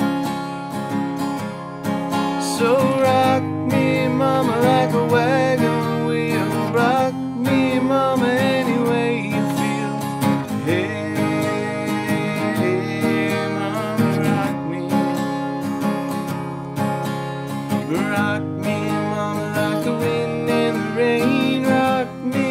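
An acoustic guitar strummed steadily in a country rhythm, with a man singing over it for much of the time.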